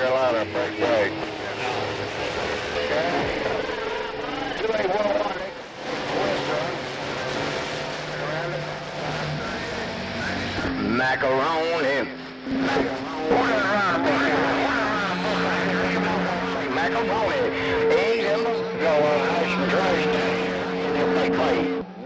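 CB radio receiver tuned to 27.285 MHz on the 11-metre band, with several distant stations talking over each other, garbled and hard to make out, under static and steady whistle tones.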